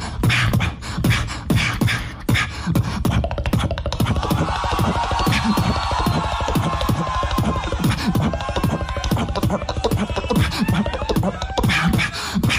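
Live beatboxing through a handheld microphone: mouth-made kick-drum and snare sounds in a fast, unbroken rhythm. From about four seconds in, a wavering higher-pitched sound rides over the beat for several seconds.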